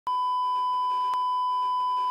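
A steady electronic beep: one unbroken high sine-like tone, with a faint click about once a second.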